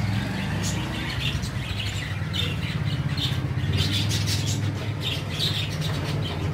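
Birds chirping in short, irregular high calls over a steady low hum.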